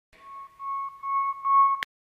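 A steady, high electronic beep tone held for about a second and a half, broken by a few short dips, ending abruptly in a sharp click.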